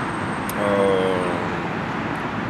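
Steady wash of distant city road traffic. About half a second in, a short held tone lasts under a second.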